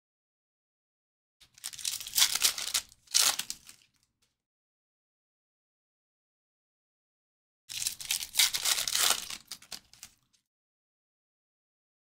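Foil wrappers of trading card packs being torn open and crinkled in two bursts of a couple of seconds each, the second about six seconds after the first.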